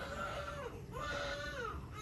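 Newborn baby on nasal CPAP giving two short, soft cries, each held level and then dropping in pitch at the end.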